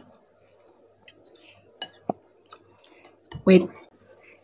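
A few faint, sparse clicks and wet smacks from eating noodles, the sharpest about two seconds in.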